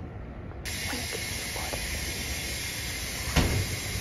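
Espresso machine steam wand hissing steadily as it steams milk, switching on suddenly about half a second in. A single knock sounds near the end.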